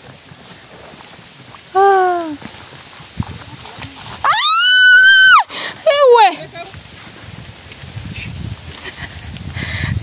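A woman's shrill, high scream held for about a second midway through, then a falling cry, as cows are driven toward her. A shorter falling call comes about two seconds in.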